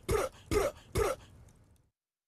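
A person's voice making three short throat-clearing or cough-like sounds, about half a second apart, then cutting to silence.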